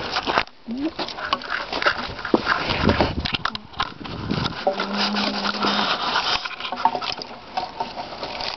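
Bark being peeled and torn by hand from a freshly felled black ash log: an irregular run of small cracks, rips and scrapes.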